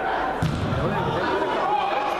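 Voices talking in a large, echoing indoor sports hall, with a single thud about half a second in.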